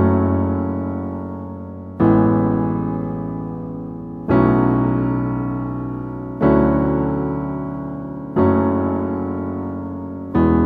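Digital piano playing a slow left-hand part: low notes or chords struck about every two seconds, five times, each left to ring and fade before the next.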